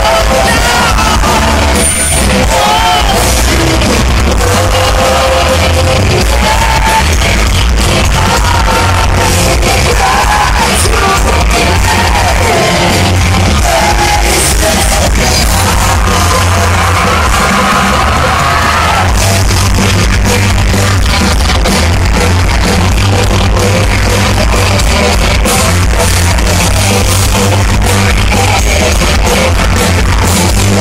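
Heavy metal band playing live, loud and dense: distorted electric guitars, bass and drum kit. A wavering lead melody rides over the band for roughly the first two-thirds and drops away after that.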